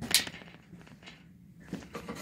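A single sharp knock just after the start, dying away within half a second, followed by faint handling and movement sounds.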